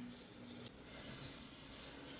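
Faint rubbing of a cleaning wipe over a plastic toilet lid, a soft hiss that is a little stronger in the second half.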